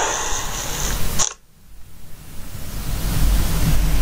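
Whooshing transition sound effect: a rushing hiss that cuts off suddenly about a second in, then swells back up with a low rumble.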